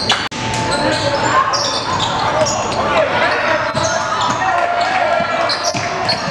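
Basketball game sound in a gymnasium: the ball bouncing on the hardwood court amid players' and spectators' voices and shouts, echoing in the hall.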